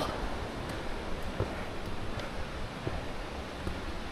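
Steady outdoor noise with a low rumble, and a few faint footsteps on stone trail steps.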